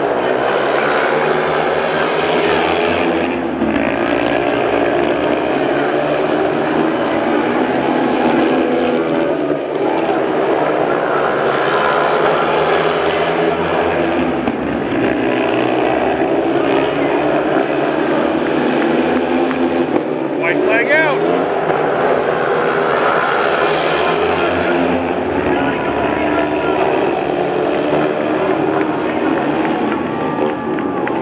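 A pack of four speedway bikes racing, their 500cc single-cylinder methanol engines at full throttle. The note swells and fades every few seconds as the riders pass through the turns and down the straights.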